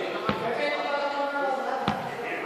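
Several people talking together in a large sports hall, with two sharp thuds, one just after the start and one near the end.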